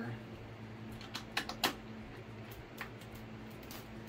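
Scattered light clicks and taps of a small screw and screwdriver being worked into a foam RC airplane's fuselage: a quick cluster of clicks between one and two seconds in, then a few single ones, over a steady low hum.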